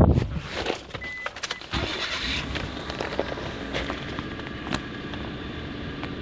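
A car door thump, a short high beep about a second in, then the car's engine starting and running at a steady idle, with a few sharp clicks inside the car.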